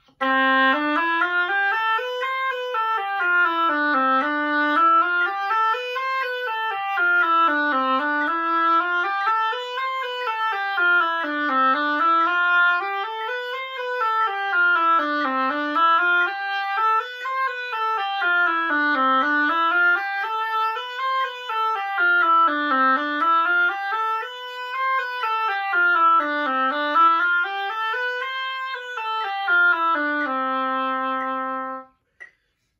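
Oboe playing a C major scale exercise in a repeating sixteenth-note rhythm pattern, running up and down one octave between middle C and the C above, about eight times over.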